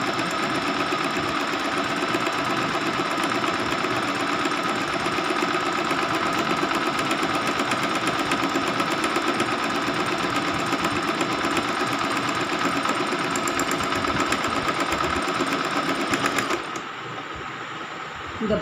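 Domestic electric sewing machine running steadily at speed, its needle stitching in a rapid, even rattle, until it stops about a second and a half before the end.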